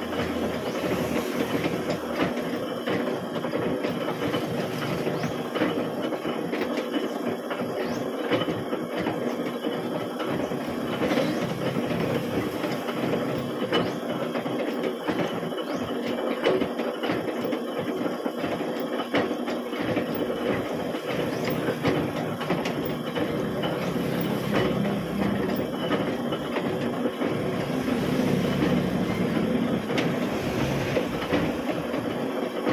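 Metal-working shaper running, its tool bar stroking back and forth inside the bore of a workpiece held on an indexing head to cut internal gear teeth. It makes a steady mechanical clatter with many small clicks.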